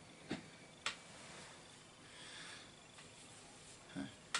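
Faint handling sounds: two light clicks within the first second, then a soft, faint hiss.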